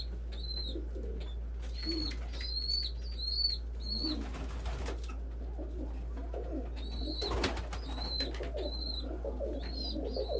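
A young pigeon squab giving repeated thin, high begging peeps in quick runs of two or three, with low cooing from adult pigeons underneath. A brief rustle about four seconds in and a single click a few seconds later.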